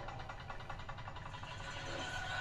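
Horror film trailer soundtrack playing quietly: a low rumbling drone under a rapid, faint mechanical ticking.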